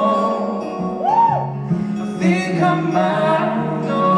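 Live performance of a slow ballad: an acoustic guitar strummed under a man's and a woman's voices singing together, with a voice sliding up and back down about a second in.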